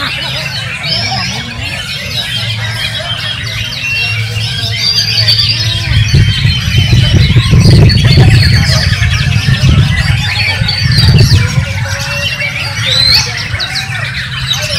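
Dense, overlapping song of caged contest songbirds, with a white-rumped shama (murai batu) whistling and trilling among them. Under it runs a low rumble that grows louder in the middle.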